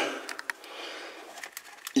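A short lull in speech: faint room tone with a few light clicks about half a second in and another just before the talking resumes.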